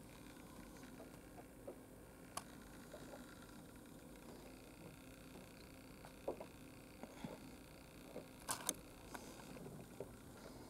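Quiet indoor room tone with a few faint sharp clicks and taps from the camera being handled, two of them close together near the end.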